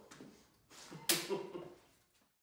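A single sharp smack about a second in, followed by a brief burst of a person's voice, then the sound fades out.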